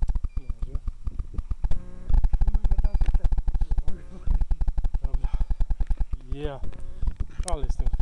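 Handling noise from a camera carried against jacket fabric: a rapid, rough rattle of rubbing and knocking on the microphone. Two short sliding pitched sounds come near the end.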